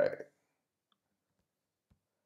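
A man's voice finishing a short word, then near silence with one or two faint clicks.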